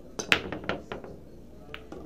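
Pool break shot in 10-ball: a sharp crack as the cue ball smashes into the rack, followed by a quick scatter of clicks as the balls hit each other and the cushions, with one more click near the end. It is a strong break that drops two balls in the side pockets.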